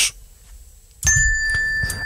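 A bell-like chime sounds once about a second in: several high pitches start together and ring for about a second.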